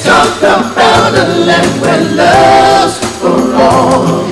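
Live gospel-style song: a male vocal group singing in close harmony with a lead male voice, held sung notes rather than clear words.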